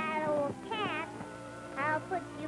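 Cartoon cat meowing a few times, each call gliding up and down in pitch, over held notes of an orchestral score.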